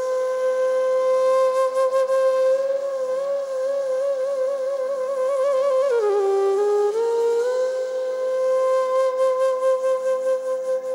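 Bamboo transverse flute (bansuri) playing long held notes: a high note with a slow vibrato, a dip to a lower note about six seconds in, then back up to the first note and held, over a soft sustained chord.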